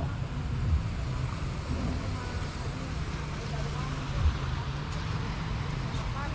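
Outdoor ambience: a steady low rumble with faint distant voices and two brief dull bumps, about a second in and about four seconds in.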